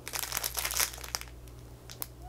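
Clear cellophane wrapping crinkling as it is handled, a run of irregular crackles that thins out after about a second.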